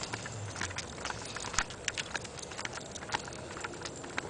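Footsteps on asphalt: a German Shepherd's claws and pads clicking on the pavement with a person's steps alongside, a quick irregular series of light clicks and taps.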